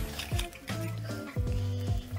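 Background music: held chords over a low bass line, changing chord about every half to three-quarters of a second.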